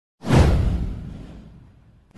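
A whoosh sound effect for an animated video intro: one sudden swoosh with a deep boom underneath, sweeping downward and fading out over about a second and a half.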